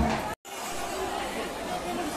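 A large bass drum beaten with a padded mallet, cut off abruptly about a third of a second in. Then a crowd chattering under a large station roof.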